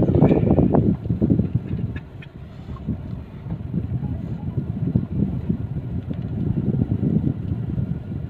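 Low, uneven rumble inside a slowly moving car: engine and road noise heard from the cabin, louder in the first second, dropping off about two seconds in, then building again.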